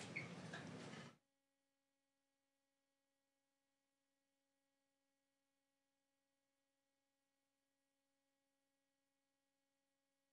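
Near silence: faint room noise cuts off suddenly about a second in, leaving only a very faint steady hum.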